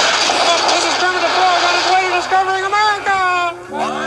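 A steady rushing noise with a comic voice crying out over it in wavering, rising yells, with no words. Near the end the yelling breaks off and a held musical chord comes in.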